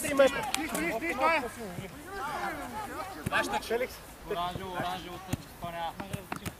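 Players' voices shouting and calling during a small-sided football game, with a few sharp thuds of the ball being kicked, one clear one about three seconds in.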